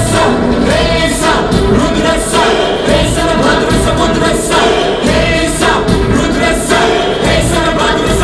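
Live Bollywood song: a man and a girl sing together into microphones over amplified music. A sharp beat cuts through about once a second.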